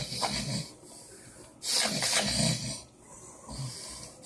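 A man's heavy, rasping, snore-like breathing as he lies unconscious after a full-blown seizure, three slow noisy breaths about a second and a half apart, the middle one loudest. This is stertorous breathing typical of the postictal phase.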